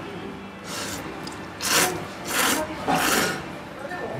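A person slurping thick ramen noodles: four loud slurps in quick succession.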